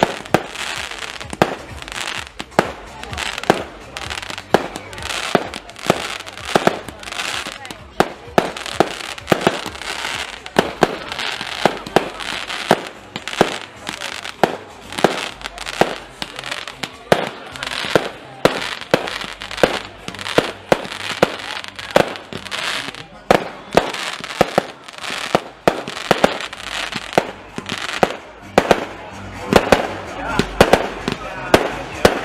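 Aerial fireworks going off in a rapid, unbroken barrage: sharp bangs roughly two to three a second.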